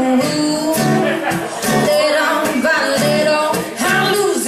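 Live acoustic song: two acoustic guitars strummed together under a woman singing into a microphone.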